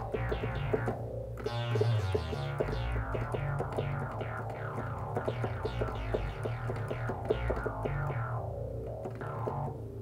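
Minimoog synthesizer playing a bass line: low held notes that step between pitches, with a fast run of short notes above them whose brightness sweeps down and back up as the filter is swept.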